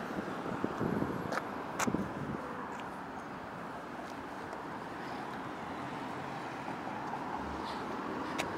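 Steady background noise of distant road traffic, with a few light clicks in the first two seconds.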